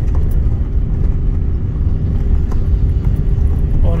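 Steady low rumble of a car's engine and tyres on a rough road whose old asphalt has been torn up.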